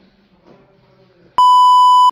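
Loud steady test-tone beep on one high pitch, an editing effect laid in with a colour-bars test card, starting abruptly about one and a half seconds in and cutting off sharply. Before it there is only faint low background sound.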